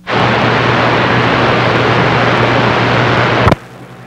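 CB radio speaker giving a loud, steady rush of static and hiss with a low hum under it as an incoming station's carrier opens the receiver. The rush cuts off with a click about three and a half seconds in.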